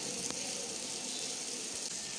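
Steady background hiss from the recording's noise floor in a pause between spoken phrases, with one faint click about a third of a second in.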